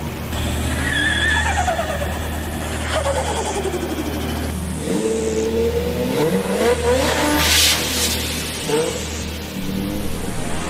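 Car sound effects inside a bass-boosted trap remix: engine revs sliding down in pitch and tires squealing, over a steady deep bass, with a burst of hiss about seven and a half seconds in.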